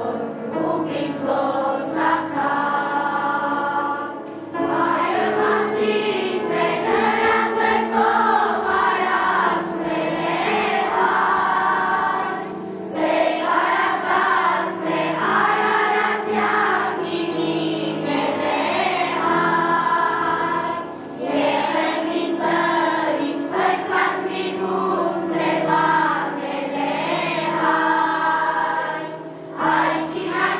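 Children's choir singing a song together, in phrases of several seconds with short pauses for breath between them.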